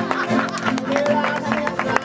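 An Aragonese jota played on accordion and guitar, with the guitar strumming rapid strokes under held accordion notes.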